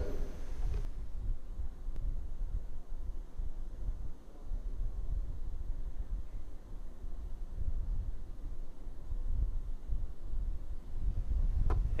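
Low, steady rumble of a Falcon 9 first stage's three Merlin 1D engines firing the re-entry burn, picked up by the rocket's onboard camera. A brief brighter hiss comes in the first second.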